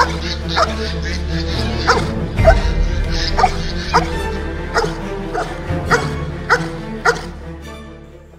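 Belgian Malinois barking repeatedly in short barks, roughly one every half second to second, over steady background music that fades out near the end.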